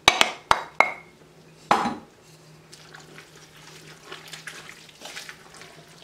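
Wooden spoon tapping and scraping parsley out of a clear bowl into a stainless steel stockpot: a few sharp taps in the first second, one with a short ringing note, and a heavier knock near two seconds. After that, soft stirring of the soup in the pot.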